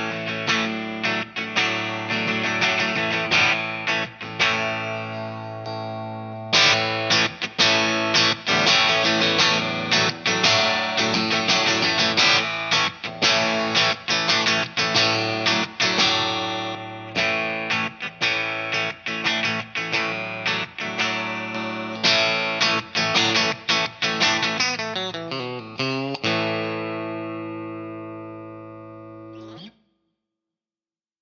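Godin Session Custom electric guitar played through an amplifier with a clean tone and its high-definition revoicer circuit engaged: chords and single-note lines, with one chord left ringing a few seconds in. The playing ends on a chord that rings out and fades away near the end.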